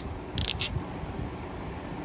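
About three quick, sharp clicks about half a second in as the white plastic jet assembly of a Briggs & Stratton all-plastic lawn mower carburetor is pulled apart by hand, followed by quiet handling.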